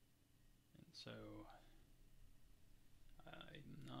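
Near silence with a man's quiet, muttered speech: a short utterance about a second in and more words starting near the end.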